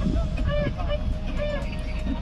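A car engine running with a low rumble while the car is driven tilted along a steep dirt slope. Voices call out over it.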